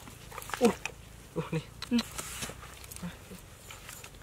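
Several short vocal sounds, the first and loudest falling in pitch, with scrapes and knocks of a metal bar digging into dry, cracked mud.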